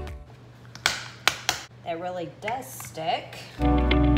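A few sharp plastic clicks and knocks as a hot glue gun's plastic stand and drip pad are snapped together and set down on a stone countertop. A brief, wordless voice follows.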